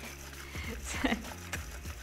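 StylPro makeup-brush spinner running, spinning a makeup brush in its bowl of cleaning liquid: a low steady motor hum with light splashing and a few small clicks, clustered about a second in.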